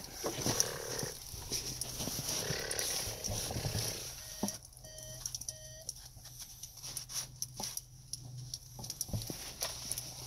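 Snow crunching and scraping in short irregular bursts as a toy loader tractor's bucket is pushed into it by hand.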